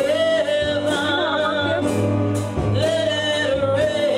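A gospel vocal group singing through microphones with instrumental accompaniment: a lead voice holds long notes with a wavering vibrato, about a second in, over steady low bass notes.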